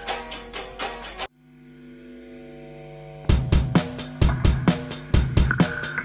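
Electric guitar strummed in a tight, even rhythm, cut off suddenly about a second in. A held chord then swells in for about two seconds, and a louder full-band passage starts, with a heavy low beat under the rhythmic guitar.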